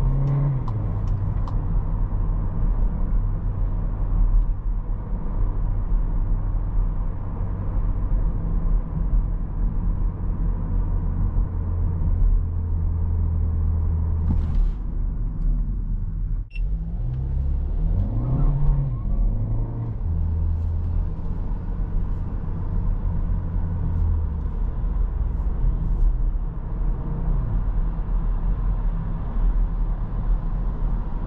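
Seat Ateca's 1.5-litre four-cylinder petrol engine and tyre and road noise heard from inside the cabin while driving at low revs. The sound breaks off for an instant about halfway through. Shortly after, the engine note rises and drops a couple of times.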